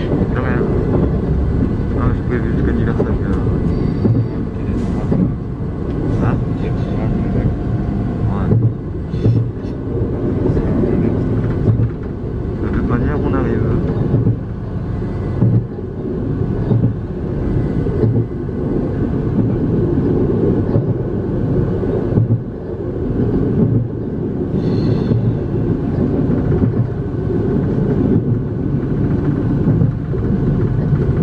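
Cabin noise inside an X73500 diesel railcar on the move: a steady low rumble of the engine and wheels on the rails, with occasional short clicks and knocks.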